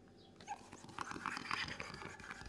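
Latex balloon being inflated through a balloon pump nozzle: breathy rushes of air starting about half a second in, mixed with small clicks and rubber squeaks from handling the balloon.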